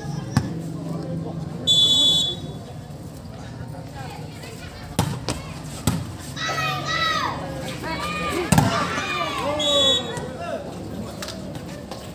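A referee's whistle is blown in two short blasts, about two seconds in and again near ten seconds. Between them come a few sharp smacks of a volleyball being hit, and voices calling out.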